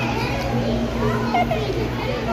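Indistinct chatter of children's and adults' voices, none of it clear words, over a steady low hum.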